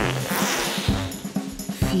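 Background music with a steady drum beat, over which a hiss of rushing air fills about the first second: a comic sound effect of a balloon being inflated with a fart.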